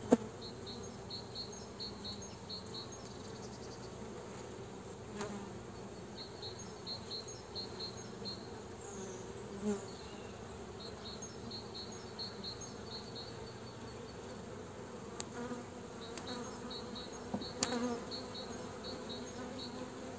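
Honeybees buzzing steadily around an open hive as its frames are lifted out, from a colony of old winter bees that the beekeeper finds a little nervous. A few light clicks of the hive tool and wooden frames sound now and then.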